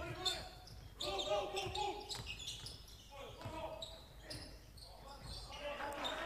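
Live basketball game sound in a large, empty sports hall: a ball being dribbled on the court, short sneaker squeaks and players' voices calling out, all echoing.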